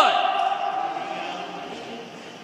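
A man's shout dies away in the echo of a large gymnasium, leaving a fading murmur of the room and a faint steady tone.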